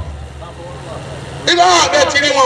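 A short pause in a man's sermon through a microphone and loudspeakers, with a low steady hum underneath. His amplified voice comes back about one and a half seconds in.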